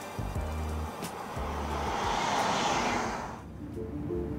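Background music with a beat. Over it, the rushing whoosh of a 2018 Volkswagen Atlas SUV driving past, mostly tyre and road noise. It swells to a peak about two and a half seconds in and then cuts off abruptly.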